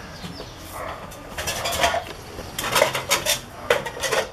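Kitchen utensils clattering: a knife and metal pans clinking and knocking on a wooden cutting board, in a few short clusters of clicks about a second and a half and three seconds in.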